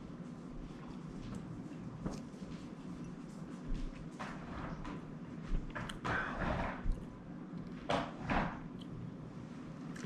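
Quiet sounds of a man sipping strong whisky from a glass tumbler, then several short, soft breaths out through the mouth and nose as the spirit burns, with a few faint clicks and knocks.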